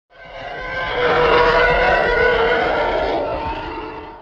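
Intro sound effect over a channel logo: a dense, sustained sound with many layered tones that swells up from silence in about a second, holds, then fades away near the end.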